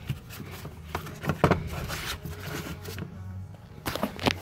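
Rubber pedal collar being worked loose by hand from a golf cart floorboard: a few light scrapes and sharp clicks over a low steady hum.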